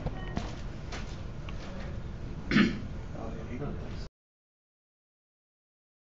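Room noise with one short, loud throat-clear about two and a half seconds in. The sound cuts off abruptly to dead silence about four seconds in.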